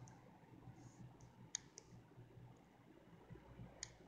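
Near silence: faint room tone with a few small, sharp clicks, a pair about a second and a half in and another near the end.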